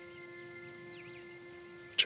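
Soft background score of a few sustained tones held steady, with a few faint bird chirps.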